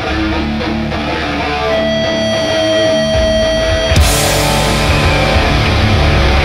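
Hardcore punk band playing live through a club PA: distorted guitar and bass riffing with little cymbal, and one high guitar note held for about two seconds. About four seconds in, the full band with drums and cymbals comes back in.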